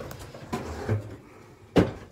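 Lawnmower being set down and shifted about inside a garden shed: a few short knocks and bumps, the loudest a sharp knock near the end.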